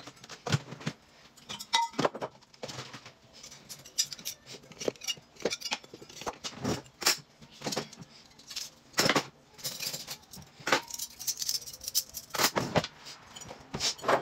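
Kitchen handling noises: irregular clicks, knocks and light rattles as items are taken from a cupboard and handled on the counter, a few of them sharper and louder.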